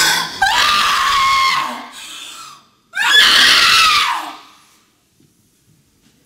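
A woman screaming into a handheld microphone: two long, high-pitched screams of about a second and a half each, the second sliding down in pitch as it fades.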